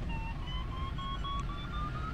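Glider variometer beeping in a quick run of short tones, its pitch edging slightly upward, the sign that the glider is climbing in a good thermal.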